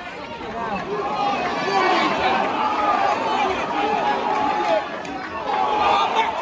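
Football crowd in the stands: many voices at once, a steady babble of fans calling and chattering.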